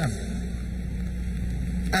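Steady low hum with an even background hiss: the room tone of a large hall heard through the broadcast feed.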